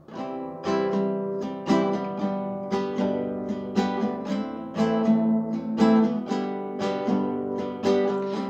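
Classical guitar strummed in a steady rhythm of chords, the instrumental intro of a song before the singing comes in.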